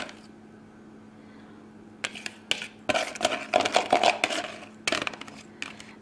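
Metal wire whisk scraping and clicking against a plastic mixing bowl as the last of a pourable batter is scraped out, in a rapid run of clicks and scrapes lasting about three seconds, starting about two seconds in.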